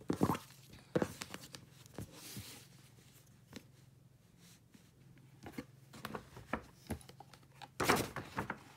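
Hands untying a satin ribbon and sliding it off a rigid cardboard gift box, in short scattered rustles and light taps, then the box lid being lifted open with a cluster of handling knocks and rustles near the end.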